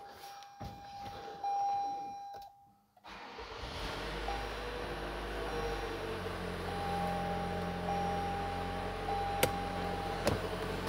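A steady electronic warning chime from the 2020 Toyota RAV4's dashboard. After a brief dropout the RAV4's 2.5-liter four-cylinder engine starts right up and settles into a steady idle, with the chime tone sounding again over it. A single sharp click comes near the end.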